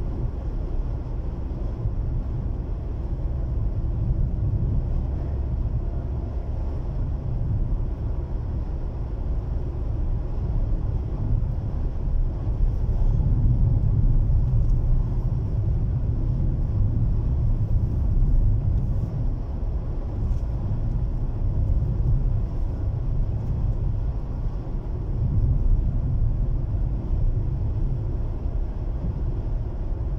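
Road and engine noise inside the cabin of a moving car: a steady low rumble that grows a little louder in the middle.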